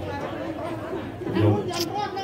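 Speech: a man announcing speaks one word about a second and a half in, over steady background chatter of a gathered crowd.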